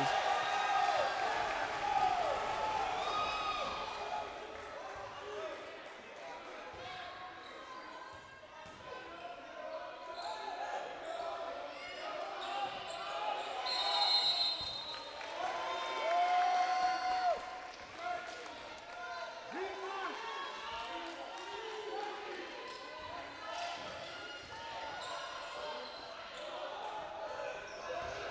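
Basketball game sounds in a gym: a ball being dribbled on the hardwood court amid players' voices and calls, with a drawn-out shout a little past halfway.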